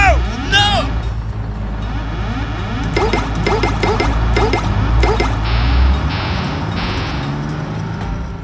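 Background music with cartoon sound effects. A low rumble from a rocket-launch effect runs for about the first six seconds, then fades. Over it come springy rising-and-falling tones: two near the start, then five in a row from about three seconds in.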